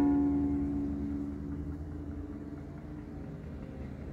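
Last strummed chord on a ukulele ringing out and slowly fading over about three seconds, over a steady low rumble.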